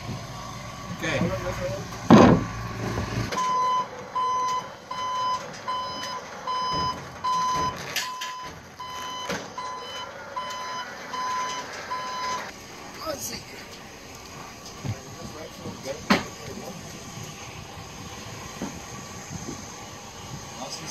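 Scissor lift's motion alarm beeping steadily, a little more than one high beep a second, and stopping about twelve seconds in. A couple of sharp knocks stand out, one during the beeping and one after it.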